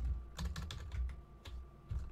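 Computer keyboard keys clicking: a handful of separate keystrokes, irregularly spaced.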